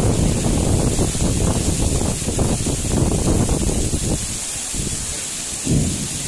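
Heavy tropical downpour hissing steadily while strong wind gusts buffet the microphone in a heavy low rumble, easing about four seconds in, with one more short gust near the end.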